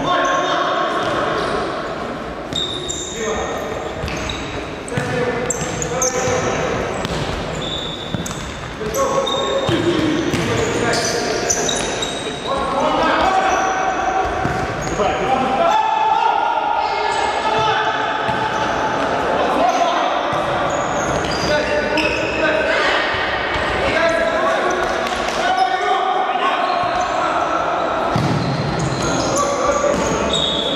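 Futsal ball being kicked and bouncing on a wooden sports-hall floor, many short knocks echoing in a large hall, with players' shouts and calls over the play.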